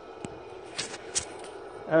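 Steady mechanical hum of a pellet burner running in a wood boiler, with a few short, light ticks.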